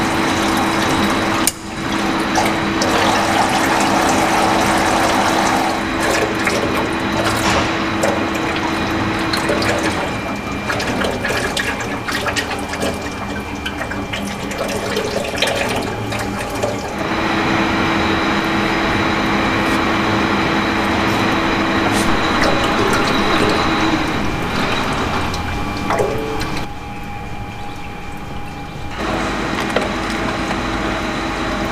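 Automatic transmission fluid pouring in a stream from the edge of a loosened Ford Ranger 6R80 transmission pan, over a steady machine hum.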